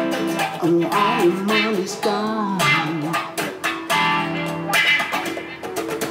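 A man singing while playing a guitar, strumming chords under the vocal line.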